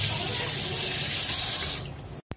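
Kitchen sink tap running in a full stream, water splashing off a mango held under it by hand; the flow stops near the end.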